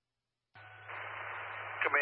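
A two-way fire radio transmission. The channel is silent, then opens about half a second in with a steady hiss and a low hum. Just before the end a voice starts calling in over the radio.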